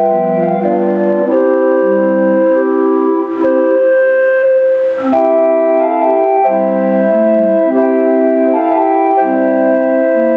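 Electric calliope with brass organ pipes playing a tune, with several held notes sounding together and changing every half second or so.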